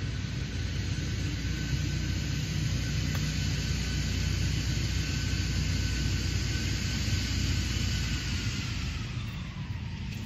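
Steady distant engine rumble with a thin whistle that slides down in pitch near the end. A faint click a little after three seconds in is a lob wedge striking the ball.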